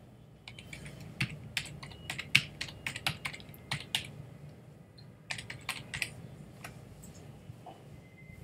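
Typing on a computer keyboard: a quick run of separate key clicks through the first few seconds, then a second short burst of keystrokes about five seconds in.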